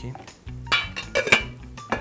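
Metal lid clattering onto an enamelled steel pot, a few sharp ringing clanks about a second in, with one more knock as the pot is set down near the end.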